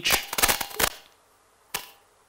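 A quick run of loud, sharp cracks or pops in the first second, then one more sharp crack near the end; the source is unexpected and unexplained.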